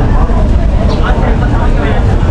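People talking over a loud, steady low rumble.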